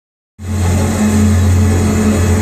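Loud live music from an arena PA system, heard from within the crowd and dominated by a steady deep bass note; it cuts in abruptly just after the start.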